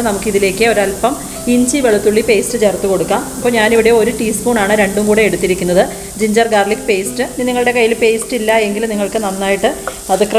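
Chopped onions frying in sunflower oil in a kadai, sizzling as a wooden spatula stirs them.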